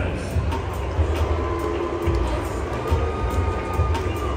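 Ballpark crowd ambience with music over the stadium's public-address system, a few held notes in the middle, above a steady low rumble.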